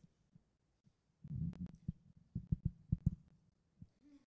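Muffled low thumps with a few sharp clicks, about eight in two seconds starting a second in: handling noise and footfalls picked up by a handheld microphone carried by someone walking across a stage.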